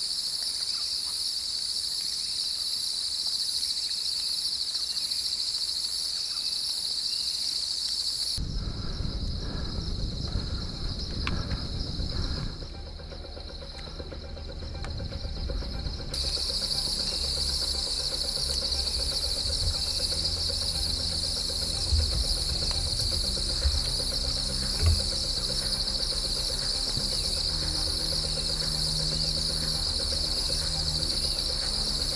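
Dense, steady, high-pitched insect chorus in tropical bushland. For several seconds in the middle it drops back under low rumbling and handling noise, and a few short knocks come near the end.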